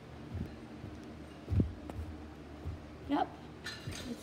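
Footsteps thudding down carpeted stairs, a few irregular soft thumps with the loudest about a second and a half in, over a faint steady hum. A short voice-like sound comes near the end.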